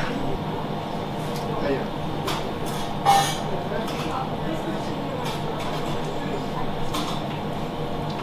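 Steady background hum of the room, with a few short clicks and clinks, about two, three and seven seconds in.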